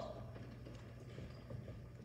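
Faint footsteps on a wooden stage floor as two people walk off: a loose patter of light steps over a low, steady room hum.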